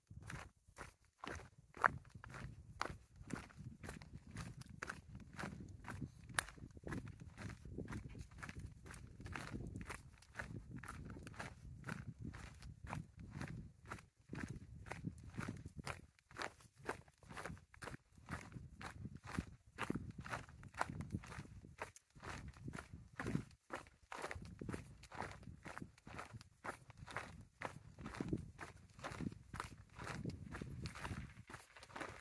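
Footsteps of a person walking at a steady, even pace on a gritty concrete path.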